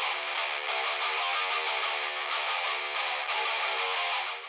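Distorted electric guitar playing a riff as a short music interlude, cutting in abruptly just before and running steadily on.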